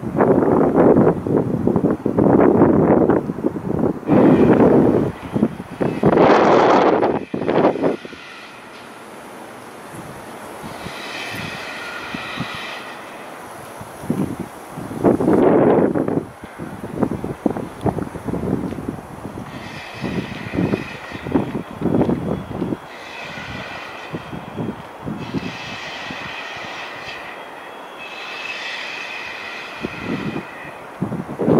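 Gusts of wind buffeting the microphone for the first several seconds, then a steadier low rush with a high, pitched squeal that comes and goes several times.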